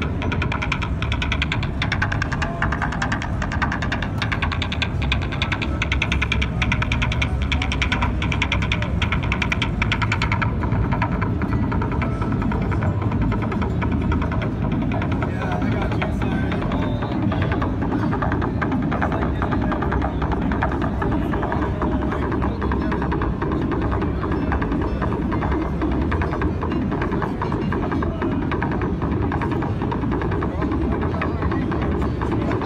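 Buchla Red Panel modular synthesizer, Eurorack recreations of the Buchla 100 series, playing a patch: a dense, throbbing electronic drone with fast pulsing. Its bright upper part drops away about a third of the way through, leaving a darker throb.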